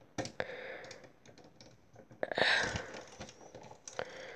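Small plastic clicks and taps of Lego Bionicle parts as the figure's head is turned on its joint and the model is handled, with a brief louder scraping rustle about halfway through.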